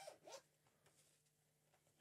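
Near silence, with a faint zipper sound from the zip of a fabric carry bag.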